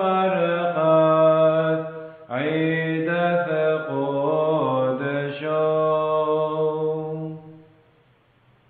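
A Syriac hymn sung as a chant in long, held notes. There is a brief pause about two seconds in, and the final note fades out near the end.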